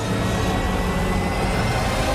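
A steady low rumble under a dense rushing noise from an action-film sound mix, with a faint high tone slowly rising through it.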